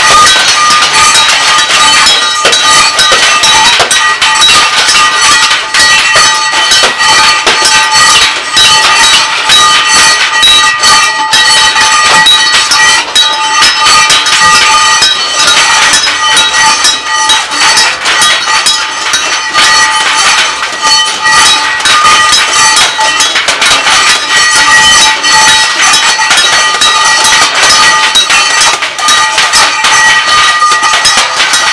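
Scrap metal played as percussion by several people at once: dense, continuous clanging, scraping and hammering of metal, with several steady ringing pitches from the struck pieces running through it.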